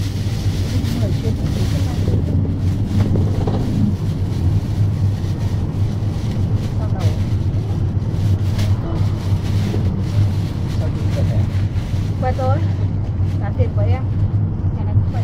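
City bus driving along, heard from inside the passenger cabin: a steady low engine drone with road noise.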